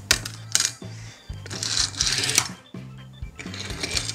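Die-cast toy cars clicking against a hard tabletop as they are set down, with a longer rattling scrape from about one and a half seconds in as one is pushed along. Background music plays throughout.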